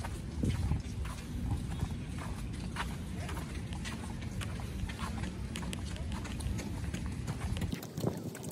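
Footsteps on a concrete walkway, about two a second, over a steady low wind rumble on the microphone that drops away near the end.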